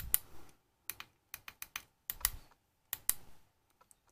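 Buttons of a Sigelei 213 box mod clicking as they are pressed: about nine light, sharp clicks in quick, uneven succession.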